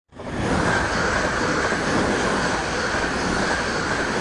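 Dutch NS electric passenger train passing close by at speed: a steady loud rush of wheels on rail and air that swells in at the start and holds as the carriages go past.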